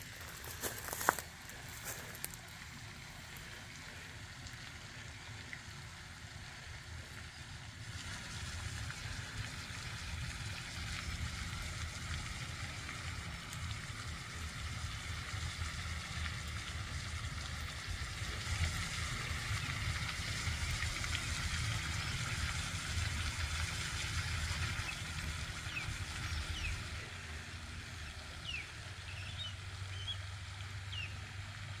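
Steady hiss and splash of a pond's spray fountain, growing louder from about eight seconds in, over a low uneven rumble. A sharp click comes about a second in, and a few faint high chirps near the end.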